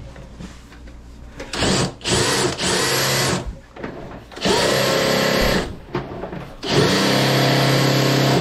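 Electric drum-type drain-cleaning machine running in short bursts, its motor switched on and off about four times, each burst a steady hum.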